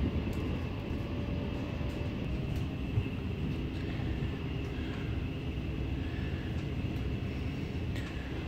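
Steady low rumble of a moving NS passenger train, heard from inside the carriage: running gear and wheels on the rails.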